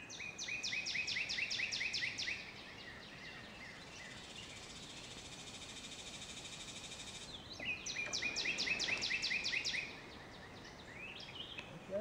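A songbird singing two bouts of rapid repeated slurred notes, each lasting about two seconds, one near the start and one about eight seconds in. A steady high buzz fills the gap between them.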